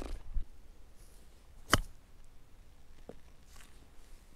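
A single sharp strike a little under two seconds in: a 55-degree wedge hitting a golf ball out of long rough grass, a chip shot onto the green. A much fainter click follows about a second later.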